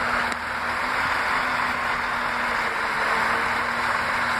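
Northern class 195 diesel multiple unit standing at the platform with its engines idling: a steady rushing noise with a constant low hum.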